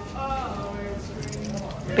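Background music with voices in the room, the held notes of a melody carrying through, and light metallic jingling in the second half.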